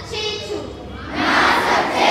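Many children's voices shouting together in unison. A louder group shout swells up about a second in.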